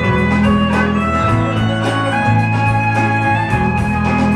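Live band playing an instrumental passage: fiddle and acoustic and electric guitars over bass and a steady drum beat.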